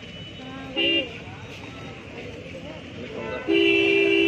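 Vehicle horns in street traffic: a short toot about a second in, then a long, steady, louder blast near the end.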